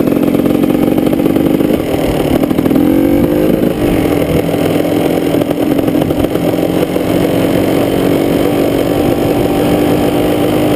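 KTM EXC two-stroke dirt bike engine under way at a steady cruise, its revs rising briefly about three seconds in, then holding steady.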